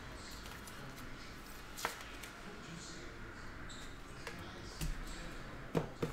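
Quiet room tone broken by a few light clicks and taps of trading-card boxes and cards being handled on a tabletop mat. The taps are loudest just before the end, as a box is picked up.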